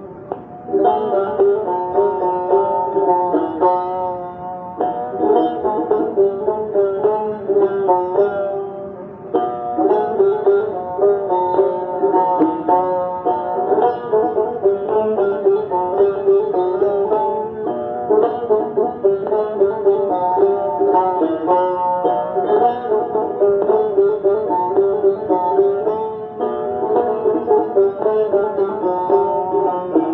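Persian plucked lute playing a repeating melodic phrase in an eight-beat rhythm, with brief breaks between phrases.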